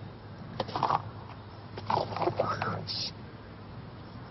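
A woman's soft, wordless crying sounds in two short spells, then a sniff, as she weeps.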